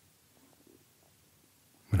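Near silence: faint room tone in a pause between sentences, then a man's voice starts speaking right at the end.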